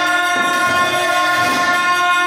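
Gyaling, Tibetan ritual double-reed horns, sounding a loud, steady note together, with a lower line that changes pitch about a third of a second in.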